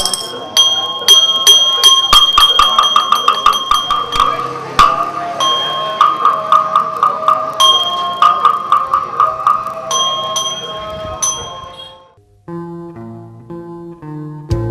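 A small brass bowl bell struck over and over, each stroke ringing on. The strokes come in several runs that quicken into a fast roll and then break off. It stops at about twelve seconds, and soft music starts near the end.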